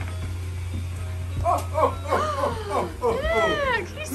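A high-pitched voice making wordless calls that swoop up and down in pitch, starting about a second and a half in, over a steady low hum.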